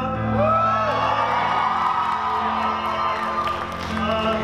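Audience cheering and whooping over live band accompaniment, with many voices overlapping while the singer pauses between lines.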